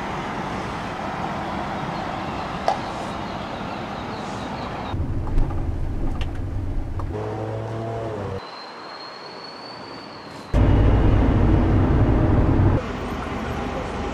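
Outdoor city ambience with steady road traffic noise. The background changes abruptly several times, and near the end a loud low rumble lasts about two seconds.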